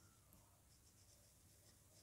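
Near silence, with faint short scratches of a felt-tip sketch pen drawing on paper, several in a row.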